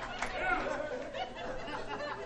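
Audience laughing and chattering, the laughter tailing off.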